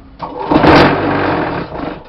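QTJ4-40 concrete block machine's vibrator running in one loud burst about a second and a half long. It starts sharply and tails off, the sound of the mould of concrete mix being vibrated to compact it.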